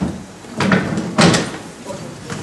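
A few close knocks and bumps with rustling. The two loudest come about half a second apart in the middle.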